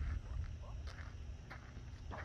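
Quiet outdoor ambience with a steady low rumble on the microphone, and faint distant voices in the first second.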